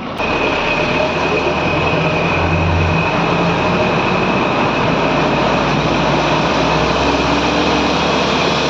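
Bus engine and road noise heard from inside a moving bus: a loud, steady rumble with a thin, steady high whine above it.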